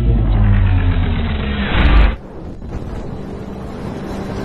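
Cinematic intro sound effects: a deep, falling rumble that builds to a loud hit about two seconds in, then cuts off abruptly and gives way to a quieter, airy rumble.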